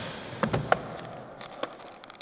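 Skateboard wheels rolling on a smooth concrete floor, with a few sharp clacks of the board during a fakie shove-it attempt.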